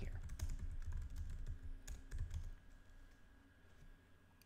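Typing on a computer keyboard: a quick run of key clicks that stops about two and a half seconds in.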